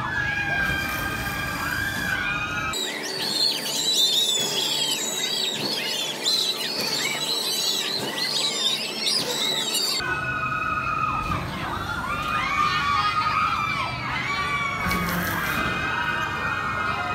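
Riders screaming on a swinging pirate-ship ride: many high voices overlapping, rising and falling, with music playing underneath.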